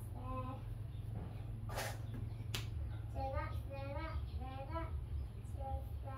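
A young child's high-pitched voice in short bursts of speech or sing-song, with a noisy rustle about two seconds in and a sharp click just after, over a steady low hum.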